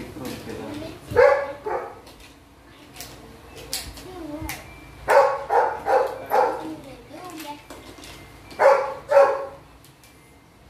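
A dog barking off-screen in short bursts: a pair just after the first second, a run of four quick barks around the middle, and two more near the end. Light plastic clicks come in between, as toy track pieces are handled.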